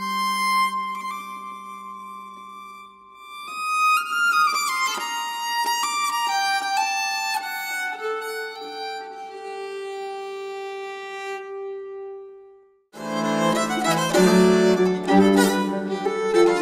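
Nyckelharpa music: a slow melody of long held bowed notes that fades out about thirteen seconds in, after which a louder, busier tune starts abruptly.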